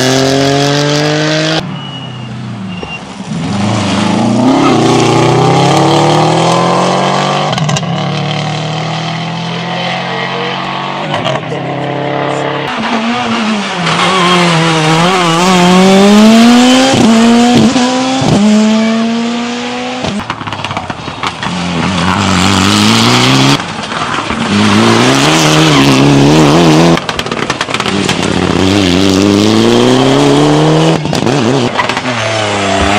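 Rally cars passing one after another on a tarmac stage, their engines revving hard, the pitch climbing and dropping at each gear change, with sudden breaks between passes. The cars include a Škoda Fabia and a Mitsubishi Lancer Evolution.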